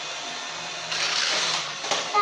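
Plastic mechanism of a Tomica rotating parking tower toy whirring as a child works it, with a faint steady hum. It gets louder for most of a second about halfway through.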